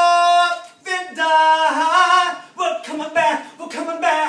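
A man singing live: a held high note, then a long line that slides up and down, then shorter broken phrases, with no instrument heard under the voice.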